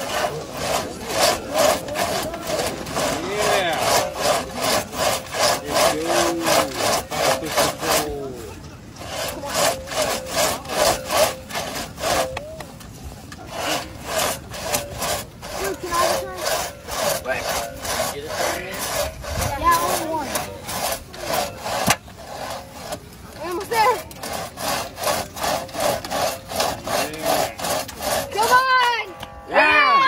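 Two-man crosscut saw cutting through a log: a fast, even rasping rhythm of several strokes a second as the blade is pulled back and forth, stopping briefly a few times.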